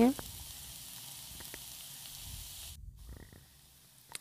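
Chopped vegetables sizzling in hot oil in a nonstick frying pan as they are stir-fried, a steady hiss that cuts off abruptly about three quarters of the way through, leaving a few faint clicks.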